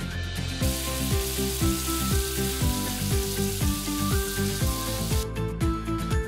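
Food sizzling as it fries: an even hiss that starts suddenly just after the start and cuts off near the end. Background music with a steady beat runs underneath.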